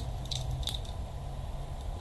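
A few faint crinkles and clicks as a small wrapped item is handled and turned over in the fingers, over a steady low hum.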